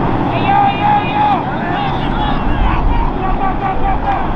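Voices shouting on a football field during a play, several short high-pitched calls, over a steady low rumble.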